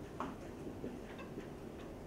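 Marker pen writing on a whiteboard: a few short, faint squeaks and ticks of the pen tip on the board, over quiet room tone.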